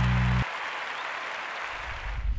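Intro music sting for an animated logo: a held low chord cuts off about half a second in, leaving an even noisy wash like distant crowd applause, with a low rumble near the end.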